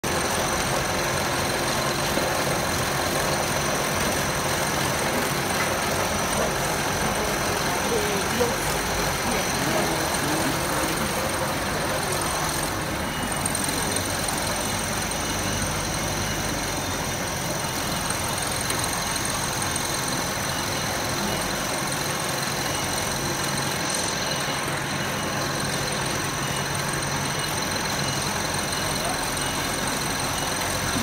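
Multi-layer belt dryer for puffed snacks running with its chain-driven conveyors: a steady machinery noise with a few steady high-pitched whine tones over it.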